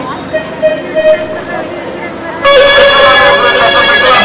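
Crowd chatter at a street procession, then, about two and a half seconds in, a loud band of reedy wind instruments suddenly starts playing sustained notes.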